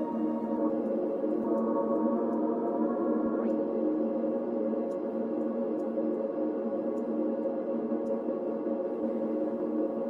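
Atmospheric pad: an arpeggio sample frozen and smeared by an Ableton Live effects rack into a steady chord of layered held tones, with added texture. Faint soft ticks sound high above it.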